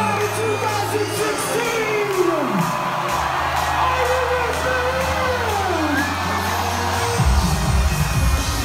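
Electronic dance music from a live DJ set, played loud over an arena sound system. Held bass notes and long falling glides carry a beatless stretch, and the full, heavier low end comes back in about seven seconds in.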